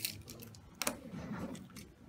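Sharp plastic clicks of buttons being pressed on a handheld antenna analyzer while it is switched to the 440 MHz band: one louder click a little under a second in, then several quicker ones.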